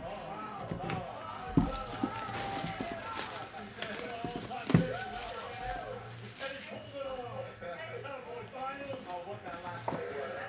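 Cardboard trading-card boxes being handled and set down on a table, with a few knocks, the loudest about five seconds in. Faint voices run underneath.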